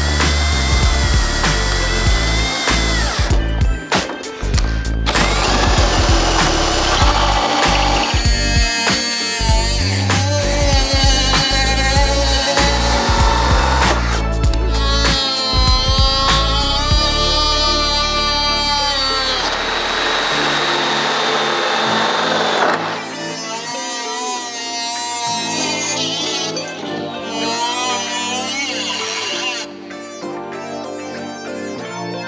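Background music over power-tool cutting. A drill with a hole saw whines as it bores through a plastic dashboard, and later a small cutoff wheel grinds through the dash and its metal brackets.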